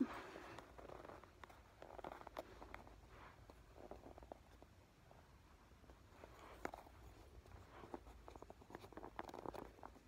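Faint, scattered clicks and taps of wooden popsicle sticks being handled and woven together under and over each other, with soft rustling in a small room.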